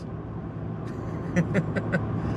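Steady engine and road noise inside a moving car's cabin, with a short laugh starting near the end.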